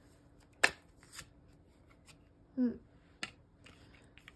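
Tarot cards being handled and laid down: a sharp card snap about half a second in, a softer click just after, and another near the three-second mark.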